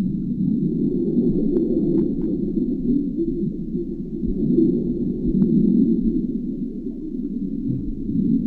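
Muffled, steady low rumble of underwater ambience picked up by a submerged camera, with a few faint clicks a couple of seconds in and again past the middle.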